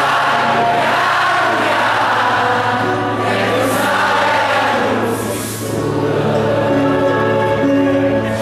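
Live concert music with many voices singing together, a concert crowd singing along, over a steady low bass note.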